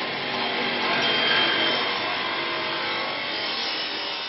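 A woodworking power tool running against wood in a piano factory workshop, making a steady rasping machine noise. It is loudest about a second in and slowly fades toward the end.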